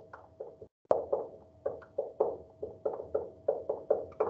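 Dry-erase marker writing on a whiteboard: a quick run of short strokes and taps, about four or five a second, as letters are written out, the loudest stroke about a second in.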